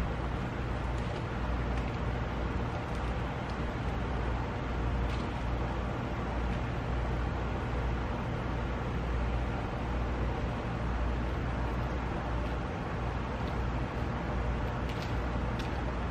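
Steady outdoor background noise: an even hiss over a constant low hum, with a few faint clicks.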